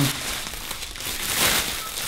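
Plastic sheeting rustling and crinkling as it is handled and pulled back from a wrapped artwork.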